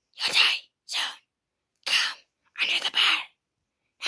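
A person whispering, four short breathy phrases in quick succession.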